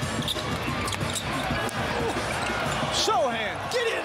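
Basketball game sound in an arena: a ball bouncing on the hardwood and a murmuring crowd, with sneakers squeaking on the court in several sliding squeaks near the end.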